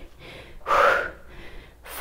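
A woman's heavy breath during a dumbbell biceps curl: one noisy puff a little over half a second in, then a quick short intake of breath just before the end.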